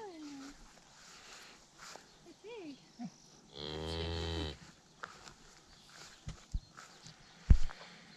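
A cow moos once, a low call lasting about a second, a little after halfway. Near the end come a few dull thumps, the last one the loudest.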